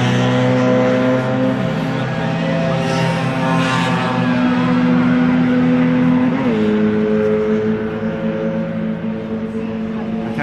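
Classic Mini race cars' A-series engines running hard around the circuit: a sustained engine note that drops in pitch about two seconds in and steps again about six and a half seconds in, easing slightly near the end.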